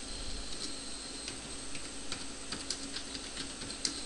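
Computer keyboard keys clicking at an irregular pace as text is typed, with one sharper keystroke near the end, over a faint steady electrical hum.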